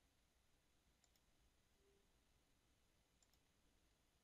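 Near silence with a faint hiss, broken by two very faint clicks, about a second in and a little after three seconds: computer mouse button clicks while drawing links in the software.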